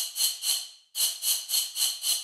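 Noise layer of a Serum future-bass drop patch, built on the 'Air Can 4' noise sample, playing on its own. It sounds as rhythmic pulses of airy hiss, about three a second, with a short break just before halfway.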